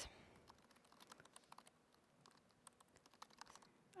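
Faint typing on a computer keyboard: scattered, irregular keystroke clicks.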